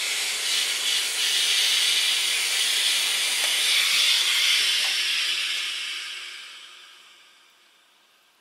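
Steam from a steam iron hissing steadily as a wool collar seam is pressed, then fading away over the last few seconds as the clapper is held down on the seam.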